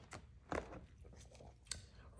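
Rigid plastic card holders being handled, knocking and rubbing together in faint clicks, the clearest about half a second in and another near the end.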